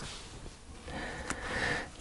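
A quiet breath drawn in through the nose, building over the second half, with a faint click of an oracle card being pulled from the deck.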